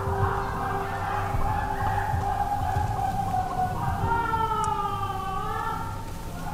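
Two long, drawn-out distant wails heard from inside a van at night: the first is held and falls slowly for about three and a half seconds, the second starts about four seconds in and wavers up and down. A steady low hum runs underneath.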